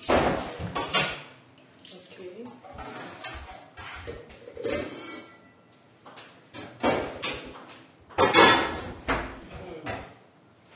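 Metal pots and pans clattering as they are handled and set down at the counter and on the stove: a string of clanks and knocks, the loudest about eight and a half seconds in.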